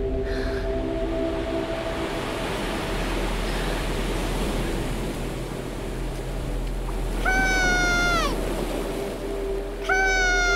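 Steady surf noise, then about seven seconds in a child's long, high-pitched cry, held for about a second before it falls away.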